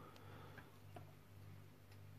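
Near silence: a steady low hum of room tone with four faint, brief ticks spread through it.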